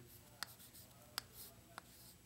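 Chalk writing on a chalkboard, faint: three short taps of the chalk with light scratching between them.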